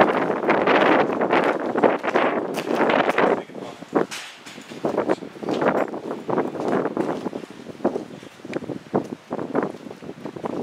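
Wind buffeting the microphone in uneven gusts, strongest for the first three seconds and then coming and going in weaker bursts, with a few short clicks.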